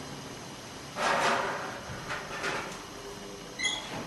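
Pizza plate sliding into a kitchen oven and the oven door being shut: a scrape about a second in, then a few light knocks and a short ring near the end.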